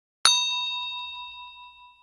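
A bell-like ding sound effect, struck once about a quarter second in and ringing out with a bright, several-toned chime that fades over about a second and a half.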